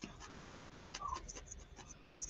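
Faint scratchy sounds of a wooden-handled felting needle stabbing and working into loose wool, with a few light ticks spread through.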